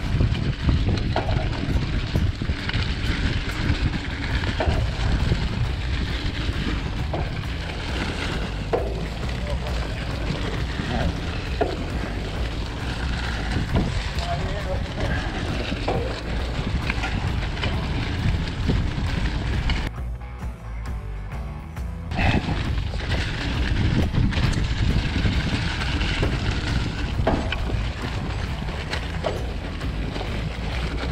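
Wind rushing over an action-camera microphone on a mountain bike riding a leaf-covered forest trail, with the tyres rolling over dry leaves and scattered clicks and rattles from the bike over bumps. The rush briefly eases for about two seconds about two-thirds of the way through.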